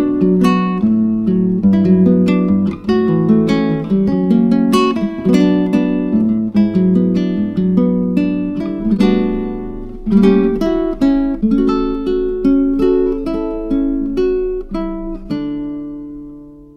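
Background music: an acoustic guitar picking a tune in quick plucked notes, ending on a final chord that rings out and fades near the end.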